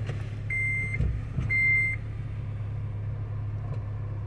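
2006 Honda Element's 2.4-litre four-cylinder engine idling steadily, with a dashboard warning chime beeping twice, about once a second, in the first two seconds. The engine idles without the noise it made at the first start: the corroded battery terminal has been cleaned and tightened.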